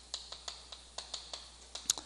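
Chalk writing on a chalkboard: a quick run of light taps and scratches as each stroke is made, about five a second, with a sharper tap near the end.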